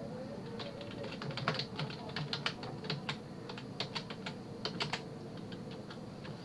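Typing on a computer keyboard: an irregular run of quick key clicks that starts about half a second in and stops about a second before the end, over a faint steady hum.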